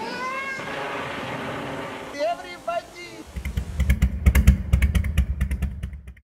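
A cat meowing: one longer call, then two short ones. About three seconds in, a loud, uneven low rumble of rapid pulses takes over and cuts off abruptly at the end.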